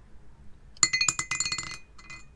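A small die tossed into a ceramic mug, clattering and clinking against the mug's walls with a ringing tone for about a second before it settles, about a second in.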